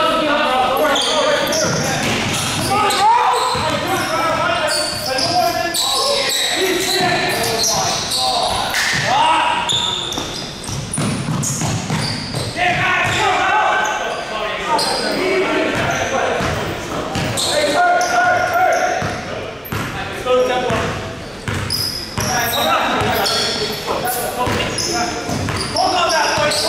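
A basketball bouncing on a hardwood gym floor during play, with players' indistinct shouts and calls echoing in the large hall.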